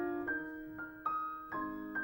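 Piano music: a slow, quiet passage of notes struck about every half second, each fading away.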